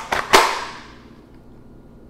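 Pistol snapping into a clear Kydex holster: a soft click right at the start, then one sharp, loud click about a third of a second in as the gun seats. The click is the holster's retention engaging.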